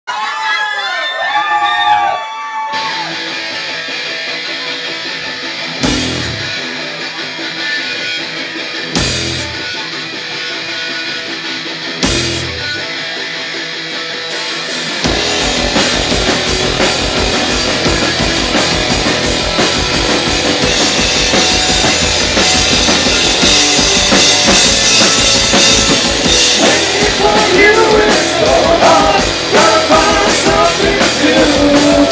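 Live metal band: a few seconds of wavering pitched tones, then a held guitar chord punctuated by three heavy drum-and-cymbal hits about three seconds apart. About halfway the full band kicks in with fast drumming, and the singer's voice comes in near the end.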